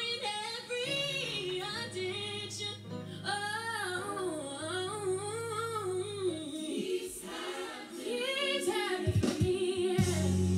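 A woman singing a slow gospel song of blessing, her voice sliding between held notes over sustained low accompaniment chords that change every second or two.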